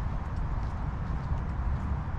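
Wind buffeting a GoPro's microphone as an uneven low rumble, with faint footsteps on a paved walkway.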